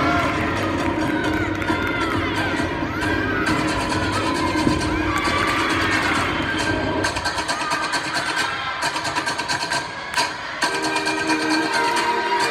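Floor-exercise music playing in a gym, with teammates and spectators cheering and shouting over it; the shouts thin out after about seven seconds, leaving the music with a steady beat.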